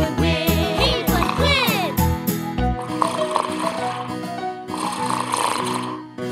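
Bouncy children's-song backing music with a steady beat. About three seconds in the beat drops out and two long, breathy cartoon snores follow over soft sustained music.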